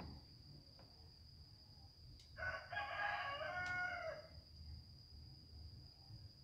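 A rooster crowing once, one call of about two seconds that drops in pitch at the end.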